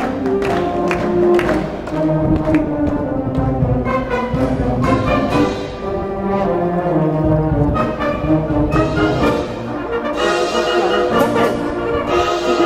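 A wind band playing, led by brass, in a full passage of held chords.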